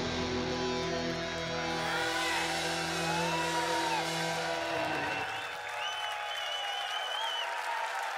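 A heavy metal band's final held chord, distorted electric guitars and bass ringing out together, stops about five seconds in. A festival crowd cheers, with whistles.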